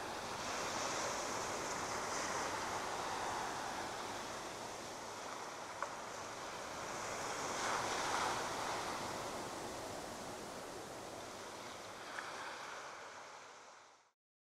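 Ocean waves washing in: a rushing surf noise that swells and ebbs twice, then fades out.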